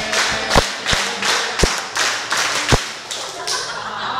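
A group's hand claps with a few sharp thumps mixed in, irregularly spaced and loudest in the first three seconds, as a clap is passed quickly around a circle in a game.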